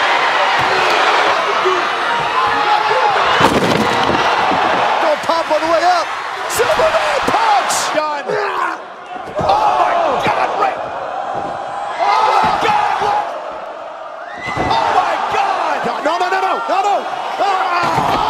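Pro-wrestling arena audio: a loud crowd and excited shouting voices, broken by several sudden slams of wrestlers hitting the ring, floor or a table. The sharpest of these come about three and a half, six and a half and eight seconds in.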